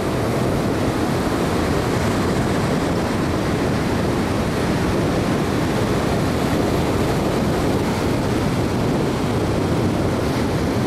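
Ocean surf breaking in a steady, even wash, mixed with wind buffeting the microphone.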